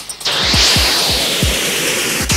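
Live electronic synthesizer music: a pulsing beat of low thumps that drop in pitch, about four a second, with a loud hissing noise swell that comes in about a quarter second in and slowly fades.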